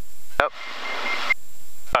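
Cockpit noise of a twin-engine aircraft heard through the headset intercom, a steady hiss of engine and airflow with the left engine shut down and only the right engine running; the hiss grows louder in the second half. The gear warning horn beeps faintly under it near the end.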